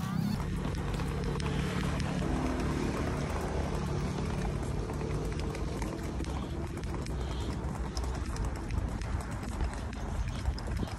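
Footsteps of a person walking with a handheld phone camera: a string of small irregular steps and scuffs over a steady low rumble.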